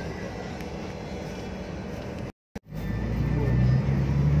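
Cabin noise inside a moving city bus: a steady rumble of engine and road. About two and a half seconds in there is a brief silent gap, after which a louder, steady low engine hum takes over.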